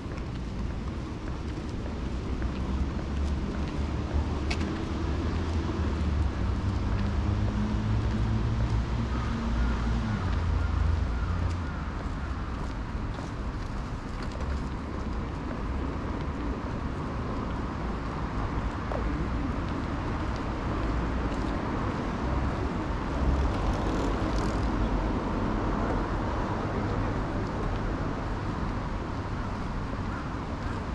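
Steady low outdoor rumble of background noise, with a faint pitched hum that rises slightly between about six and eleven seconds in.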